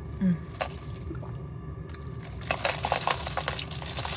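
Mouth sounds of drinking boba tea through a wide straw and chewing the pearls: a single click about half a second in, then wet crackling and slurping from about halfway on.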